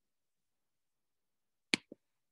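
Silence for most of the time, then near the end two quick clicks on the computer, a sharp one followed at once by a fainter one.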